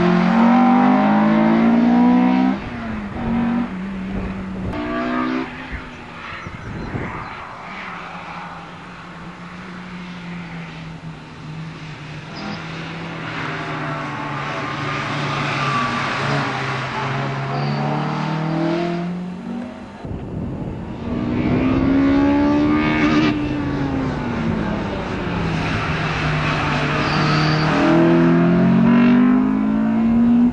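Honda Integra Type R's 1.8-litre four-cylinder VTEC engine driven hard, heard from the trackside over several separate passes. The engine note climbs and drops as the car accelerates and changes gear, swelling as the car comes near and fading as it goes away.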